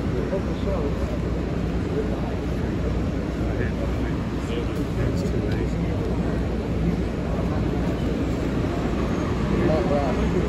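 Steady low rumble of a large coach bus engine idling at the curb, under indistinct voices of people on the sidewalk.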